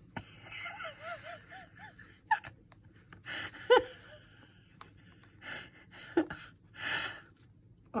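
A woman laughing softly under her breath in a short run of giggles, then a few breathy sighs and gasps.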